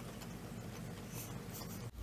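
Faint scratching and rustling of small objects being handled, with no speech.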